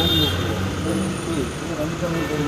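Voices talking indistinctly over a steady low hum.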